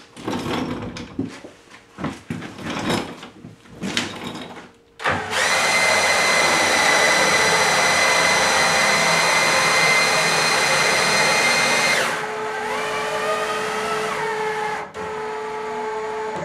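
Cordless drill spinning the X-axis lead screw of a home-built CNC router, driving the gantry along its rails. After a few seconds of knocks and clicks, a loud, steady whine with several tones starts about five seconds in. It drops to a quieter whine at about twelve seconds, its pitch rising and then falling, and stops about a second before the end.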